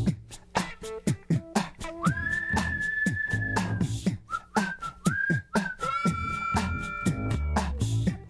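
End-credits theme music: a whistled melody in long held notes over a steady drum beat and bass.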